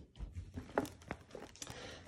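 Faint handling sounds: soft rustling with a few light clicks, as the tote bag and the phone are moved.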